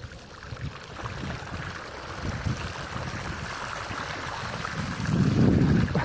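Wind buffeting the microphone and the hiss of bicycle tyres running through water on a flooded road while riding; the rumble grows louder about five seconds in.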